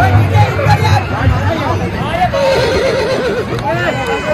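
Crowd chatter from many people, with a horse whinnying in a quick, wavering call about two and a half seconds in.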